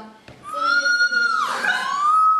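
A teenage girl's high-pitched squeal of delight: a long held squeal that bends down about a second and a half in, followed by a second squeal starting near the end. It is an excited reaction to joyful news.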